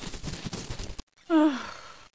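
About a second of rushing, crackly noise that stops abruptly. Then a short voiced sigh or groan falling in pitch, the loudest sound here.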